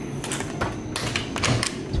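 A quick irregular run of clicks and knocks from a hotel room door's electronic key-card lock and handle as the door is unlocked and pushed open.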